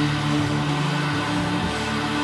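A live rock band plays with electric guitar, bass guitar, keyboards and drums, holding steady low notes without singing.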